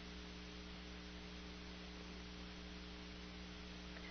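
Faint steady electrical mains hum with a low hiss, the background noise of the audio line.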